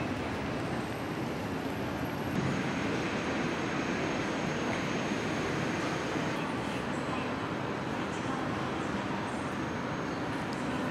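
Steady rumbling noise of rail travel, a train running and station surroundings, with a faint high tone joining about two seconds in.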